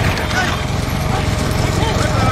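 A pair of racing bulls galloping on tarmac as they pull a rekla racing cart, their hoofbeats mixed with the steady running of motorcycles riding close alongside and men shouting.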